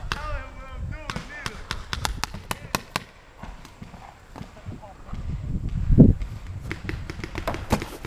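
Paintball markers firing: a string of sharp pops, several a second, with the most in the first few seconds and more near the end. A louder thump comes about six seconds in.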